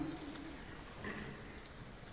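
Quiet room tone in a pause between spoken phrases, with the echo of the speaker's last word fading at the start and a faint low sound about a second in.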